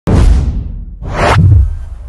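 Logo-intro whoosh sound effects: a sudden hit with a deep boom at the very start that dies away, then a second whoosh swelling up about a second in and ending in another deep boom that fades out slowly.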